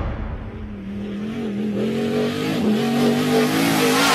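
An engine revving, its pitch climbing slowly and unevenly and growing louder toward the end.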